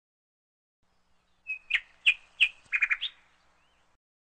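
A short run of high, bird-like chirps: a held note, then several sharp chirps about a third of a second apart, a quick triple and a final rising chirp, all within about a second and a half.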